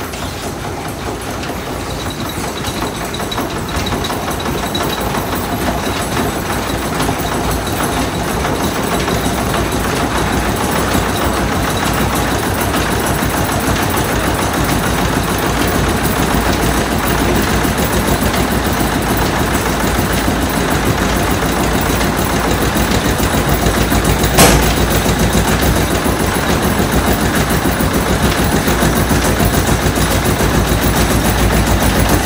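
Turbine-driven mill machinery running: flat belts and large pulleys turning a corn grinder, a steady mechanical rumble that builds in loudness over the first ten seconds or so and then holds. One sharp knock stands out about 24 seconds in.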